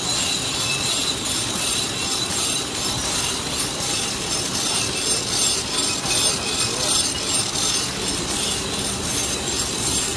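An automatic flow-pack machine running steadily as it wraps plastic cutlery-and-napkin sets in clear film, with a fast, regular clatter of its feed and sealing mechanism. A high whine sounds over it for the first few seconds.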